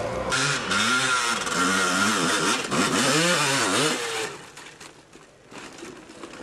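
Motocross bike engine revving up and down several times over loud noise, then dropping away about four seconds in.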